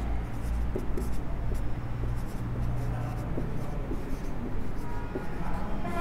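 Whiteboard marker writing on a whiteboard: faint scratching strokes and small ticks as a word is written out.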